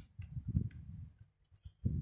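A few soft clicks over low, irregular thumping and rustling.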